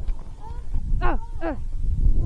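A dog yipping: a faint yip about half a second in, then two short yelps falling in pitch about a second in, half a second apart, over a low rumble.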